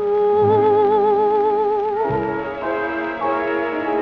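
Closing music of a 1938 French popular song played from a shellac 78 rpm record: long held notes with a strong vibrato, then a few changing chords from about two seconds in, with the narrow, dull top end of an old disc recording.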